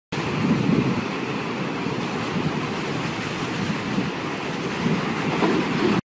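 Intro sound effect for an animated title: a steady rushing noise like surf or wind, with a few low swells, that cuts off suddenly at the end.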